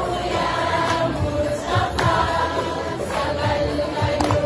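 A crowd of women singing together in chorus, with hand claps.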